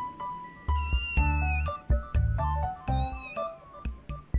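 Young kittens mewing twice over background music: a thin, high call lasting about a second, then a shorter one about three seconds in.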